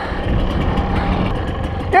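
Kawasaki KDX 220's two-stroke single-cylinder engine idling steadily.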